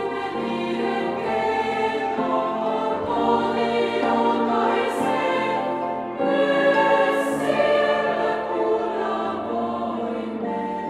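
Girls' choir singing a slow, sustained passage with instrumental accompaniment. Sung 's' sounds hiss briefly about five seconds and seven seconds in.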